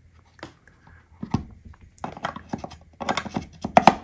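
Spyderco Sharpmaker's triangular ceramic rods being handled and set into the base's 30-degree back-bevel slots: scattered light clicks and knocks, coming faster near the end.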